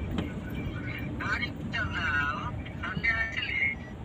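Steady road and engine rumble inside the cabin of a moving Suzuki car, with voices over it.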